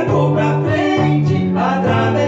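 Male voices singing a song over electronic keyboard accompaniment, with held bass notes that change every half second or so.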